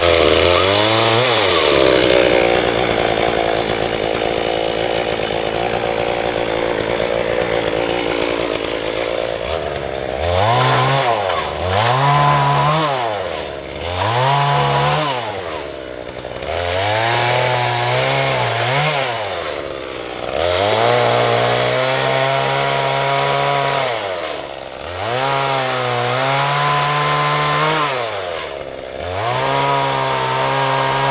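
Ryobi chainsaw cutting fallen wood. It runs steadily for about the first nine seconds, then is sped up and let spin down again about every two seconds as the trigger is squeezed and released.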